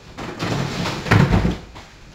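Rummaging through the top drawer of a bedside table, then the drawer pushed shut with a heavy thump a little over a second in.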